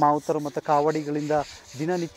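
A man's voice speaking, with a short pause a little after halfway.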